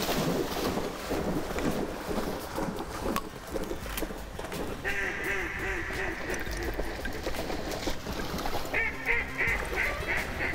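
A retriever splashing through shallow flooded-timber water. Then come two runs of quick duck quacks, one near the middle and another starting near the end.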